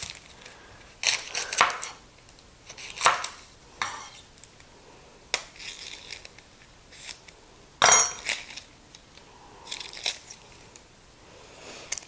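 Chef's knife cutting the ends off a yellow onion on a bamboo cutting board: scattered short knocks of the blade against the wood, with crinkling of the papery onion skin being peeled. The loudest is a sharp knock with a brief ring about eight seconds in.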